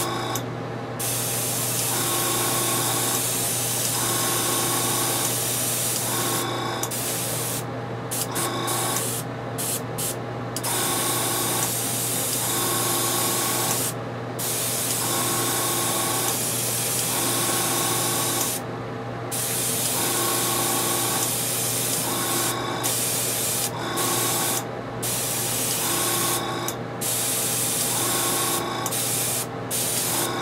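Airbrush spraying paint onto a small model part: a continuous hiss of air and paint that breaks off for a moment about ten times as the trigger is let go, with a steady low hum underneath.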